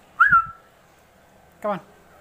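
A single short whistle, rising and then settling on one note, with a low thump under it about a quarter of a second in.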